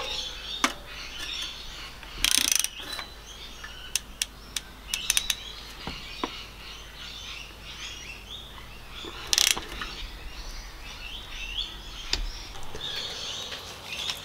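Socket ratchet on a long extension clicking in short, irregular bursts as it works a spark plug down in the bay of a Jeep 3.8 L V6; two of the bursts are louder than the rest.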